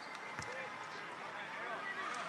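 Faint, indistinct background voices over a low steady murmur: a lull with no clear sound event.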